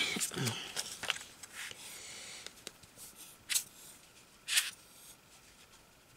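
Quiet handling of paper and a plastic glue bottle on a craft table, with two short, sharp noises about a second apart in the middle.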